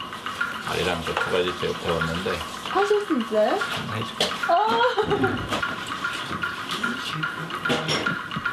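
People talking in short exchanges, with a steady hiss underneath.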